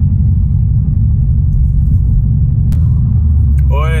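Steady low rumble of road and engine noise inside a moving car's cabin, tyres running on a wet road. Two faint brief clicks sound in the second half.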